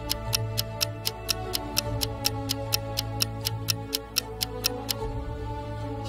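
Countdown-timer ticking, a clock-like tick about four times a second, over soft background music. The ticking stops about five seconds in as the timer runs out.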